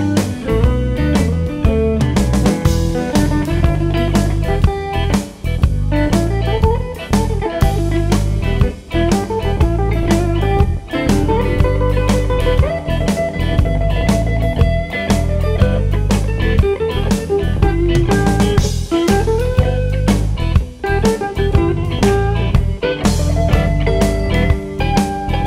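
Electric blues band playing an instrumental passage: an electric guitar lead with notes bent up and held, over bass and a drum kit keeping a steady beat.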